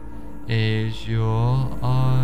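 Meditation background music: a low, chant-like drone held in long notes that break and start again, swelling about half a second in.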